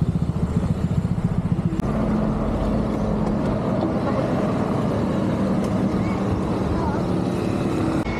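Small motor scooter engine running at low speed and idling close by, a steady low drone with a fast throbbing pulse in the first couple of seconds.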